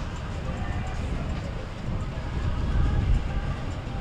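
Low, steady rumble of a motor yacht's engines as the boat passes close by.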